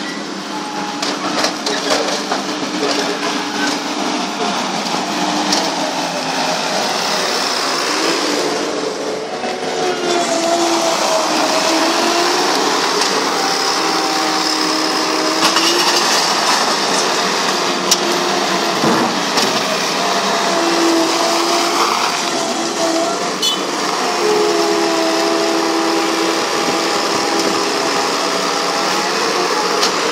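Skid-steer loader's engine running loudly, its pitch rising and falling in steps as the machine works.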